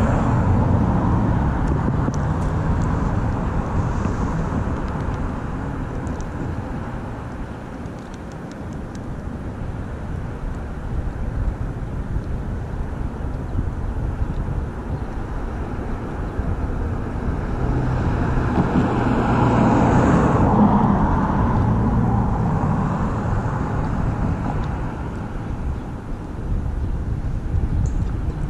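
Road traffic on a bridge: a steady rushing noise of passing vehicles that fades and swells as they go by, loudest about twenty seconds in.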